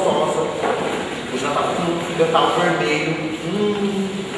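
A man's voice making wordless vocal sounds into a cupped hand: held hummed tones broken by short mouth clicks, in the manner of beatboxing or vocal imitation.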